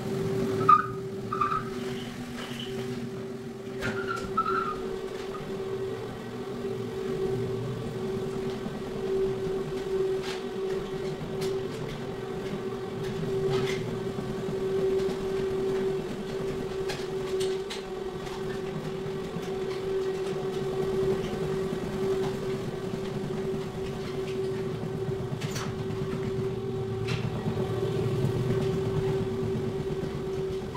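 Single-disc rotary floor machine running with a steady hum, its brush scrubbing foamy cleaning solution over a hardwood floor. The machine's loudness swells and eases a little as it is swung back and forth.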